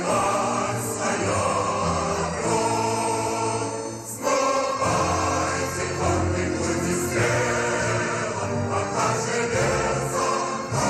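Choral music: a choir singing long held chords, changing chord about four seconds in.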